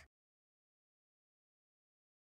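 Near silence: the sound track is empty.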